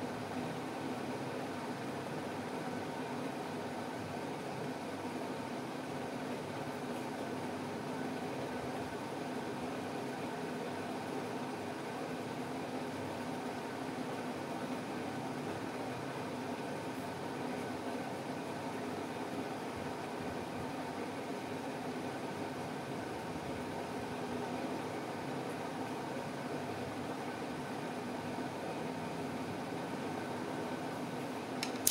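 Steady mechanical hum with an even rushing noise and a few faint held tones under it.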